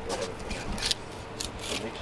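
Fillet knife cutting along a barrelfish's back in a handful of short strokes through skin and scales.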